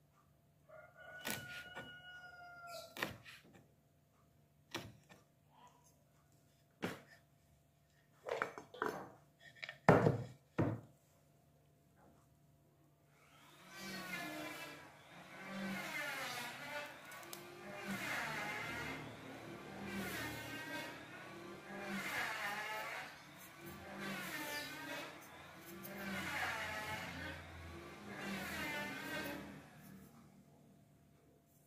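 A kitchen knife chopping fern stems against a wooden cutting board: scattered knocks over the first dozen seconds, the loudest near ten seconds. From about thirteen seconds a louder pitched, wavering sound takes over, swelling and fading about every two seconds.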